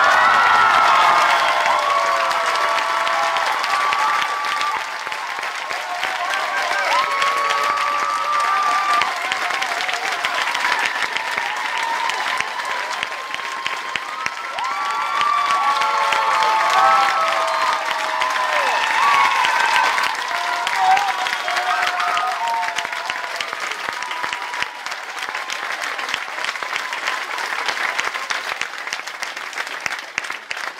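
Audience applauding loudly, with cheering voices rising and falling above the clapping. The applause thins a little toward the end.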